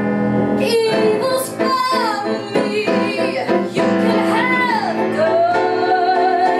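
A woman singing with instrumental accompaniment, her voice sliding up and down through a few short phrases and then settling into a long held note near the end.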